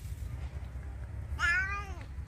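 A domestic cat meowing once, a short call about a second and a half in that rises and then falls slightly in pitch.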